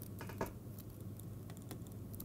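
Faint taps and scratches of a stylus writing on a tablet screen: a few sharp clicks in the first half second, then lighter ticks.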